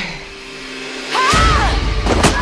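Action-trailer sound design: a quiet held low music tone, then about a second and a quarter in a sudden heavy low hit with a whoosh and a short yell rising and falling in pitch.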